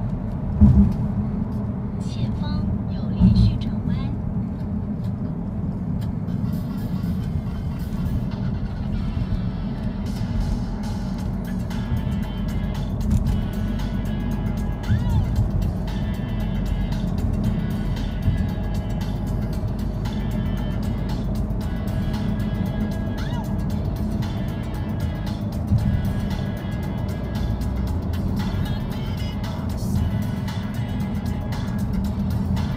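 Cabin noise of a 2017 VW Tiguan diesel driving at road speed: a steady low rumble of engine and tyres, with a couple of thumps in the first few seconds. Music plays over it.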